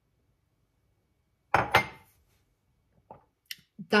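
A ceramic mug set down on a stone countertop with two quick knocks, about one and a half seconds in, ringing briefly. A few small ticks follow.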